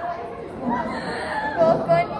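Indistinct chatter of several young voices, quieter for the first half second, then picking up.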